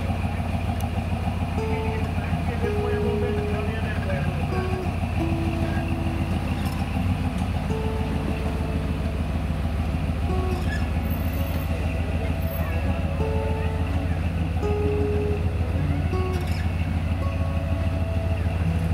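Early Ford Bronco's engine running steadily at low revs as it crawls over rocks.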